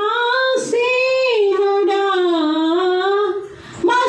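A woman singing a Telugu devotional song solo into a microphone, unaccompanied, in long held, gliding notes. A short breath pause comes near the end.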